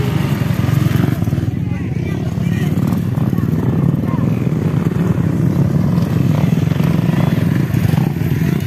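Motocross dirt bike engines running on track in a steady, loud drone that holds its level throughout, with voices faint in the background.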